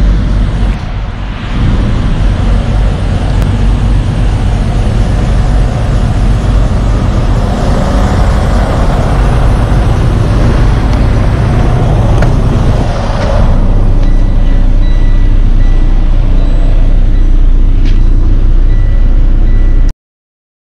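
Semi truck's diesel engine running close by, a steady low rumble under a broad hiss that cuts off a little past halfway. After that, a short high beep repeats several times.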